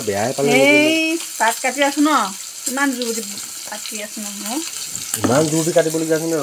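Chopped vegetables sizzling as they fry in oil in a pan, stirred with a metal spatula. A woman's voice speaks in short stretches over the frying and is the loudest sound.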